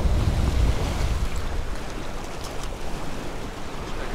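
Surf washing against the jetty rocks, with wind rumbling on the microphone, strongest in the first second.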